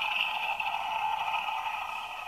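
Toy T-rex's electronic roar sound effect, set off by tilting its head, played through its small built-in speaker: thin and tinny with no bass, weakening slowly toward the end.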